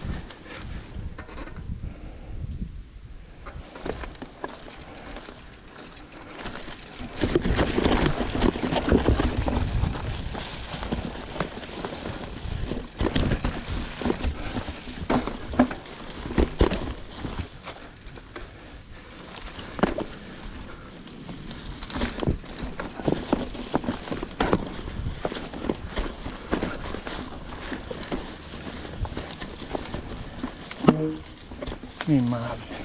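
Giant Trance 29 full-suspension mountain bike riding over a rocky trail strewn with dry leaves: tyres rolling through the leaves and over rocks, with frequent sharp knocks and rattles of the bike. It is loudest from about seven to ten seconds in.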